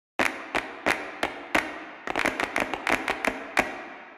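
A rhythmic run of sharp, ringing percussive strikes, about three a second, with a quicker flurry around the middle, opening a flamenco-style piece.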